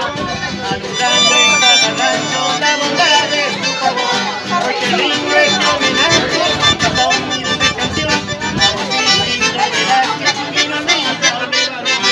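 Piano accordion and acoustic guitar playing a folk tune together.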